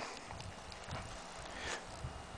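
Faint, irregular footsteps on dry ground and grass, over a quiet outdoor background hiss.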